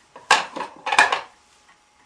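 Small metal items, jewellery, clinking and rattling as hands rummage through a small wooden box, in two short clattering bursts well under a second apart.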